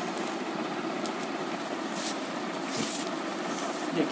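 Steady background noise, with a few brief rustles of a saree's fabric being unfolded and shaken out.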